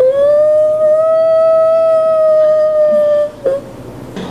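A person's long, high-pitched whining howl in a begging, dog-like manner, held for about three seconds, rising slightly and then sagging, with a short extra whimper just after it.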